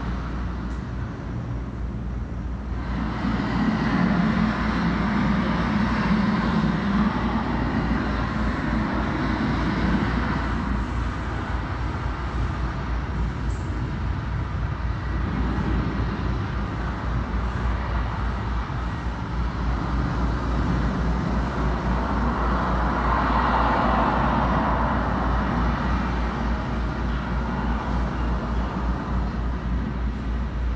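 Ocean waves washing against a rocky shore, heard as the soundtrack of a video played back: a steady rushing noise that swells a few seconds in and again a little past the middle, over a low hum.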